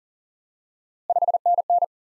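Machine-sent Morse code at 40 words per minute, a single steady beep tone keying "5NN" once about a second in: five quick dits, then dah-dit twice. 5NN is the abbreviated 599 signal report, with N standing for 9.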